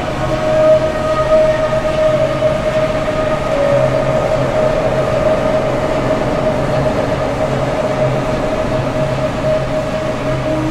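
Electronic music from a live acid set: a sustained synth drone holding one high tone over a hissing, rumbling wash, with a low bass note pulsing on and off in the second half.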